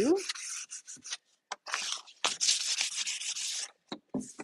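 Hand scuff-sanding a factory-painted cabinet door's edge and grooves with fine 320-grit sandpaper on a block, a dry rasping rub that takes the sheen off the finish. A few short strokes come first, then a longer spell of quick back-and-forth strokes in the second half.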